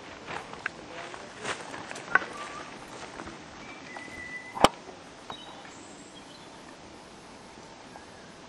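Mountain bike coming down a rocky forest trail: scattered clicks and knocks of the tyres and frame over stones and roots, with one sharp knock about four and a half seconds in.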